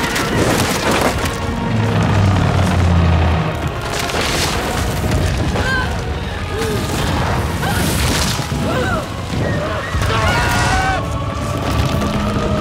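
Film battle soundtrack: a dramatic music score with heavy booms about every four seconds, and from the middle onward short cries and shouts from several voices.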